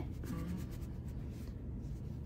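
Soft background music, with faint scratchy rubbing as hands press and flatten a stuffed crocheted yarn piece.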